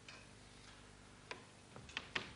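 A pause with near silence and faint room hiss, broken by a few small sharp clicks, one about a second and a half in and two close together near the end.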